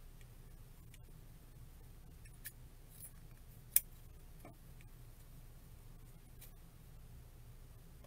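A few sharp snips of upholstery scissors cutting dovetail ends into ribbon. The loudest snip comes just before four seconds in. A low steady hum sits underneath.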